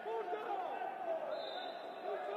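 Several men's voices shouting and calling to one another on a football pitch, carrying in a sparsely filled stadium. A short, faint, steady high tone joins them in the second half.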